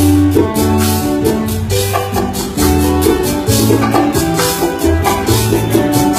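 Live Puerto Rican jíbaro ensemble playing an instrumental seis interlude: a plucked cuatro and guitar carry the melody over a moving bass line, with a steady shaken and scraped percussion rhythm.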